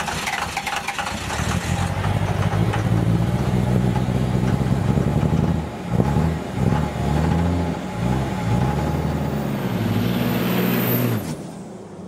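Vehicle engine revving: its note rises and falls several times over the running sound, with a thin high whine over the last couple of seconds, then cuts off suddenly near the end.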